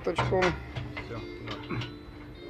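Indistinct voices with a couple of short, light metal knocks as a stirrer paddle is clamped onto a stainless cheese vat, over a steady low hum.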